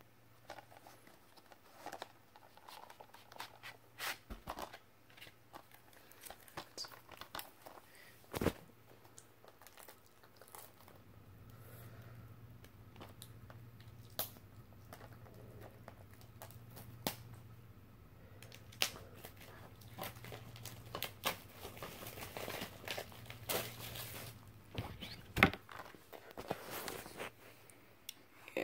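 Plastic shrink-wrap being torn and peeled off a Blu-ray case: crinkling and tearing with scattered sharp handling clicks, busiest in the last several seconds. A faint steady low hum sits underneath from about a third of the way in.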